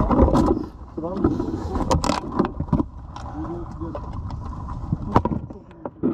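Several people talking close by, with sharp knocks of plastic drink bottles being picked up and bumping against the plastic container around them, over a low rumble.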